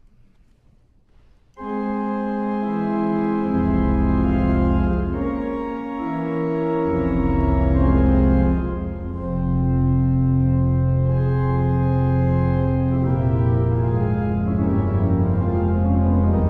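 A 19th-century American romantic pipe organ starts playing suddenly after a second and a half of near silence, opening with full sustained chords; deep pedal bass notes join about two seconds later and hold under the chords.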